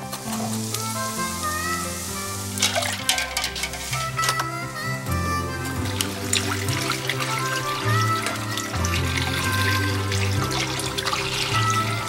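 Background music: a steady bass line stepping from note to note under a melody, with a hiss in the first second and a run of sharp clicks a few seconds in.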